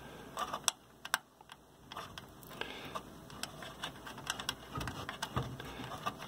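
Scattered small clicks and taps, irregular and spread through the few seconds, as two stacked M.2 mounting screws are turned down to hold an NVMe SSD to the motherboard.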